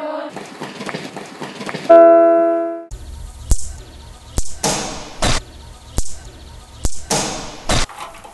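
A class of children's voices together for about two seconds, then a single loud bell-like ring that dies away over about a second. After that come a run of sharp cracks and short swishes from a wooden stick, about eight in five seconds, over a low rumble.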